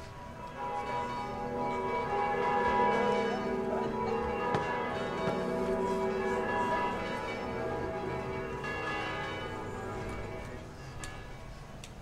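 Bells ringing in a peal: many overlapping ringing tones that swell about a second in and fade near the end.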